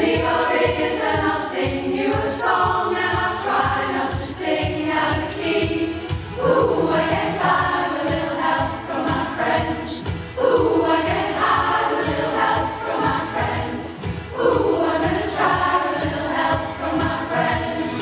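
A large amateur choir of mostly women singing a pop song in several parts, its phrases swelling in about every four seconds.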